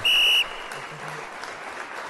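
A short, loud, high-pitched electronic beep lasting about half a second, then a faint even rush of noise.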